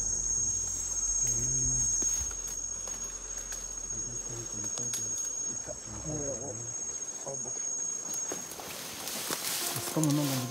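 A high, steady insect trill in the forest undergrowth that stops about a second and a half before the end, with faint low voices underneath.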